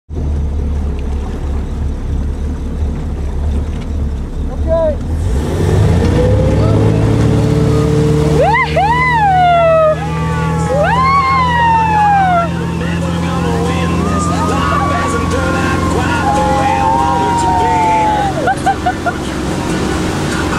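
Tow boat's engine running with a steady low drone that grows louder and higher about five seconds in as the boat speeds up to pull the wakeboarders out of the water. Loud rising-and-falling whoops of cheering voices follow, with more calls near the end.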